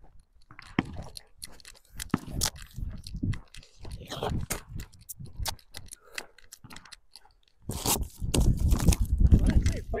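Footsteps crunching irregularly on gravelly, debris-strewn dirt as people walk. Near the end there is a louder, low rumbling stretch.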